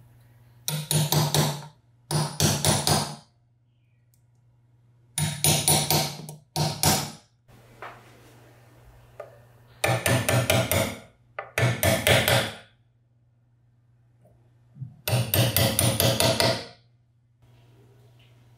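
Small hammer tapping a steel pin punch to drive the tiny fixing pins of metal nameplates into a cast-aluminium tool housing. The tapping comes in about seven quick runs of rapid light blows, with short pauses between runs.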